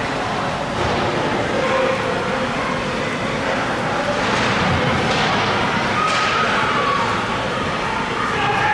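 Ice hockey game ambience in an echoing indoor rink: skate blades scraping on the ice, with a couple of sharper scrapes about halfway through, over indistinct voices and shouts.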